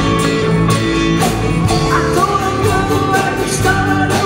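Live band playing a rock song: drum kit keeping a steady beat under guitars and bass, with a sung line coming in about two seconds in.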